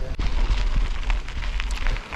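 Mountain bike tyres crunching and crackling over a loose gravel trail while riding, under a heavy low rumble of wind on the microphone.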